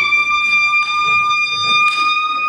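A trumpet in a brass ensemble holding one long, high, steady note.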